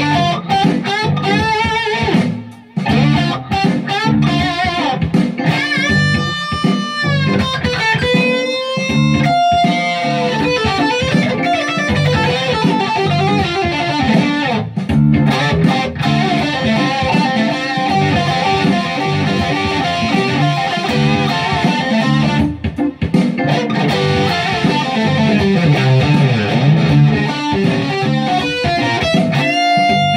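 Moxy KC Juniper electric guitar playing an improvised jam, with bent, wavering notes about six to ten seconds in.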